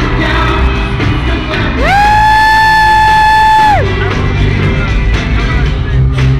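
Loud live pop concert music picked up from the crowd. A single high note glides up a little before two seconds in, holds steady for about two seconds, then falls away.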